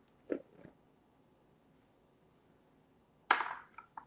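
Flour dumped from a small bowl into a mixing bowl: a brief soft rush about three seconds in that fades quickly, after near quiet, followed by a couple of light clicks as the small bowl is set down.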